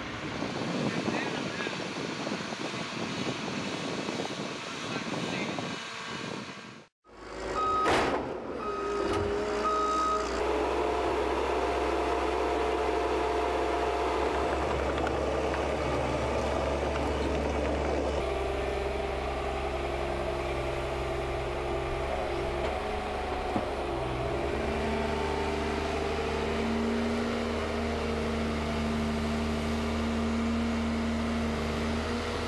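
A tracked carrier's engine running steadily, with a reversing alarm beeping three times about eight seconds in. Before that comes a rougher noise that cuts off suddenly about seven seconds in.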